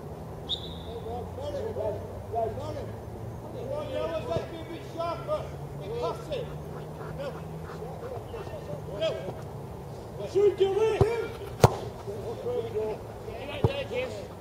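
Players' voices calling out across a football pitch, faint and distant. A single sharp knock of a football being kicked stands out about two-thirds of the way through.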